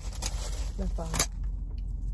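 A brief spoken word, with a couple of short sharp clicks, over a steady low hum.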